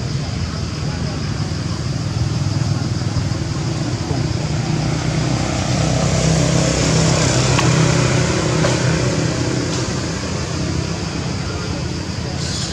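Motor vehicle noise: a low engine rumble that grows louder toward the middle and then fades, as of a vehicle passing, over a steady high hiss.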